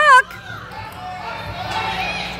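A spectator's loud, high-pitched shout of encouragement to a barrel-racing rider, ending just after the start. It is followed by a steady murmur of children's and spectators' voices in a large indoor arena.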